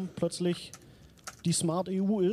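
A man's voice speaking in short phrases, with a pause in the middle in which a few faint, sharp clicks are heard.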